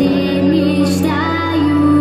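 A girl singing a pop song into a microphone over a backing track with a steady bass note, played through the stage speakers.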